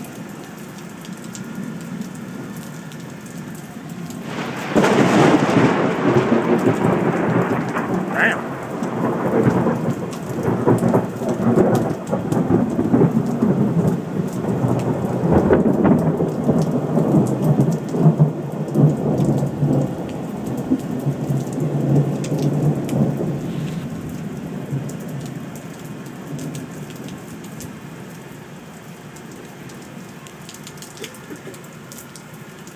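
Steady rain, then about four seconds in a sudden loud thunderclap that rolls on as a long rumble of thunder, fading away over some twenty seconds.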